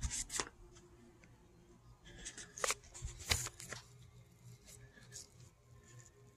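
Movement and handling noise: a few irregular short scuffs and crunches with quiet gaps between, as the person filming moves about on the stone deck and gravel.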